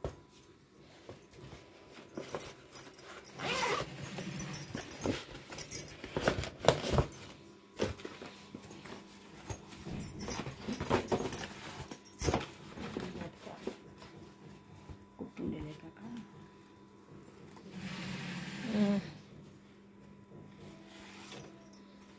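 A jute lunch bag being handled and opened out: irregular rustling and rubbing of stiff fabric with scattered sharp clicks, and now and then a jangle like bangles on the wrist, over a faint steady hum.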